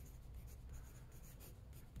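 Pencil writing on paper, faint, in a run of short strokes as a word is written out by hand.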